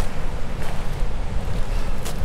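Wind buffeting the microphone: a steady, loud low rumble with no pitch, over a fainter wash of noise.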